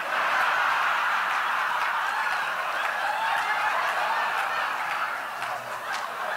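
A large audience breaks into laughter all at once, with a few scattered claps; the laughter stays loud and eases slightly near the end.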